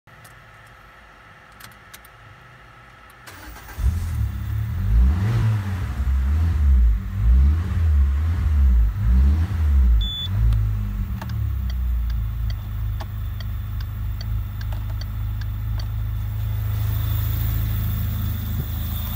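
A Citroen C4's 1.6-litre petrol four-cylinder engine cranks and starts about four seconds in, revs up and down several times, then settles to a steady idle from about eleven seconds. A short beep sounds about ten seconds in.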